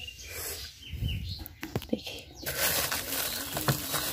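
Plastic bags rustling as frozen bagged fish are handled in a freezer compartment, with a few sharp clicks about halfway through.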